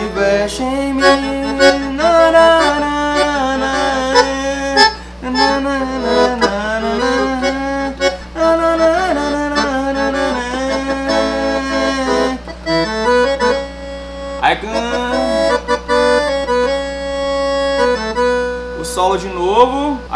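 Roland V-Accordion, a digital piano accordion, playing a forró solo melody on the right-hand keys: a stepping line of notes over held lower notes, with a short lull about two-thirds of the way through.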